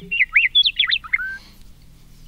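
A bird singing a short phrase of quick whistled chirps, the notes sliding up and down, that stops about a second and a half in.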